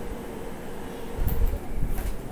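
Handling noise as the power and USB cables are unplugged from a video switcher: a few low thumps and sharp clicks starting a little over a second in, over a faint steady hum.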